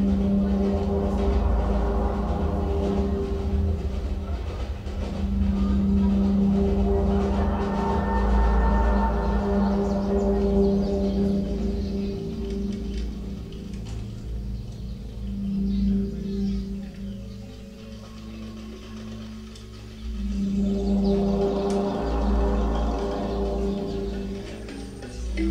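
Live laptop electronic music: a sustained drone of steady low tones over a deep bass, with higher overtones that swell and fade in slow waves. It thins out and dips quieter past the middle, then swells back near the end.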